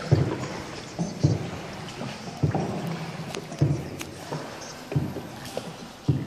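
Paddle strokes of a small hand-paddled boat inside a cave: a dull stroke about every second and a quarter, over a steady hiss of water.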